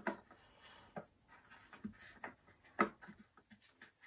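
Faint clicks and scraping of a 3D-printed plastic flap being test-fitted into the RAM hatch opening of an iMac's aluminium rear housing, with the sharpest click a little before three seconds in.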